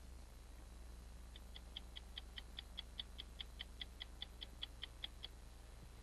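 Faint, rapid, evenly spaced ticking, about five ticks a second, starting about a second in and stopping shortly before the end, over a low steady hum.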